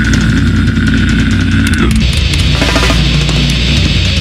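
Grindcore band recording playing heavy distorted-guitar music. A steady high tone is held over it for the first two seconds, then the music changes.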